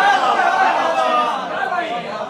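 Overlapping voices of several people talking at once.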